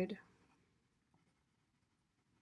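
Faint scratching of a pen writing words on paper, after the last spoken word fades out.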